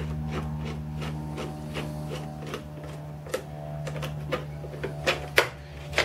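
A scatter of light clicks and taps from small parts being handled as a printed circuit is fitted onto a plastic instrument cluster housing, with a few sharper clicks near the end. A steady low hum runs underneath.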